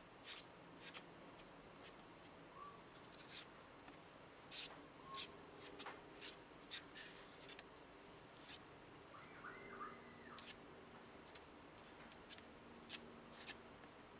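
Faint, irregular scrapes of a metal palette knife spreading light moulding paste across a stencil on watercolour paper, a series of short strokes.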